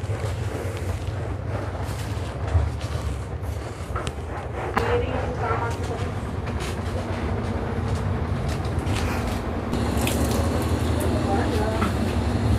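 Steady low hum with light scattered knocks and rustles of hands wiping and handling things on top of a refrigerator. Faint voices sound in the background.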